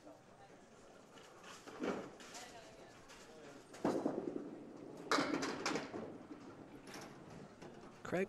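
A candlepin ball thuds onto the wooden lane about halfway through. A second or two later comes a short clatter of thin candlepins being knocked down, with a smaller knock near the end. Faint murmur of voices in the alley throughout.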